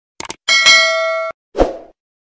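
Subscribe-button animation sound effects: two quick clicks, then a notification-bell ding that rings with several steady tones for under a second and cuts off abruptly, followed by a single low thump.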